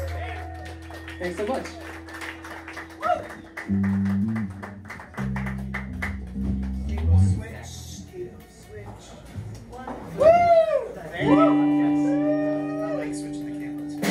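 A live jangle-pop band playing the closing bars of a song: sustained guitar chords and bass notes, with a voice over the top near the end.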